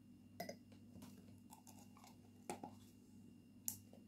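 Three faint clinks of a metal teaspoon against a cut-glass bowl, the last and loudest near the end as the spoon is set down in the bowl, over a low steady hum.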